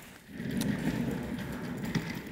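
Rumbling and scraping of things being moved across a concrete shop floor, starting a moment in and running on steadily.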